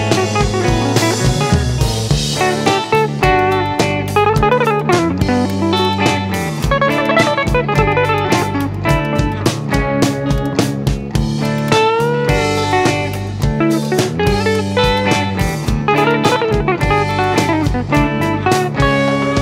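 Instrumental break of a mellow jam-band song: a lead solo with a few bent, gliding notes about twelve seconds in, over guitars, bass and a drum kit keeping a steady beat.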